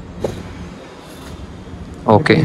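Steady low rumble and hiss of background noise in a large indoor hall, with no clear engine tone and one faint short tick about a quarter second in.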